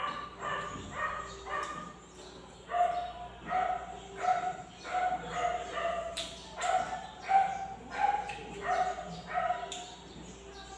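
A dog barking over and over, about one to two barks a second, with a short break about two seconds in.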